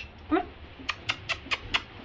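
A handler's tongue clicks, clucking to urge a horse forward: a quick series of sharp clicks about five a second, broken about a third of a second in by one short rising voiced sound.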